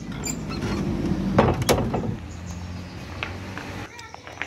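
Wooden door being pulled open, a low scraping rumble with two sharp knocks about one and a half seconds in.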